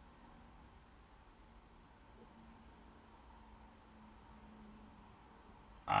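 Near silence: faint steady background hum, with a man starting to speak right at the end.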